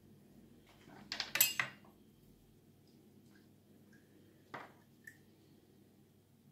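Metal spoon clinking against dishes: a quick run of clinks about a second in, then a single click and a lighter tap near the end.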